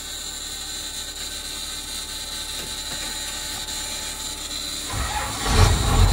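A 12-valve Cummins diesel in a 1964 Chevrolet C60 truck cranking on its starter with a steady whir for about five seconds, then firing and running, much louder and low-pitched.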